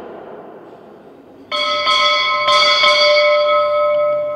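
Altar bell rung at the consecration, marking the elevation of the host and the priest's genuflection. It is struck sharply about a second and a half in, then three more times within the next second and a half, and its clear, steady tones ring on.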